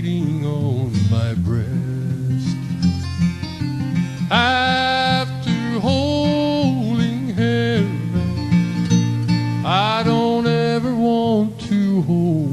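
Live country music: strummed and picked acoustic guitar with a melody line holding long notes, in a song introduced as a new love song.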